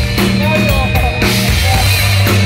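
Heavy metal band playing live at full volume: an electric guitar line with bending notes over drums and bass, heard through a phone's microphone in the crowd.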